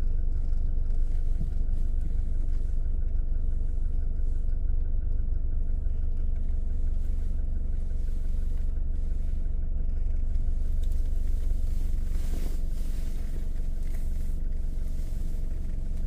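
A car driving slowly, heard from inside the cabin: a steady low engine and road rumble.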